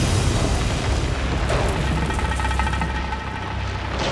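Volcanic eruption: a steady deep rumble under a dense hiss.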